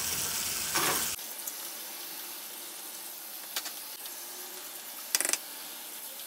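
Bathroom tap running steadily into a sink, louder for about the first second and then softer. There is a single light click midway and a short rattle of clicks near the end.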